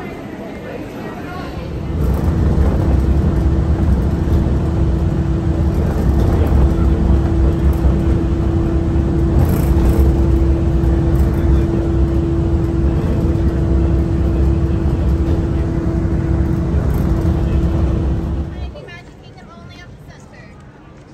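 Mark VI monorail train in motion, heard from inside the car: a loud, steady low rumble with a constant hum. It starts about two seconds in and cuts off abruptly near the end.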